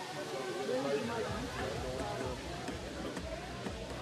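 Background voices and chatter, with some music underneath.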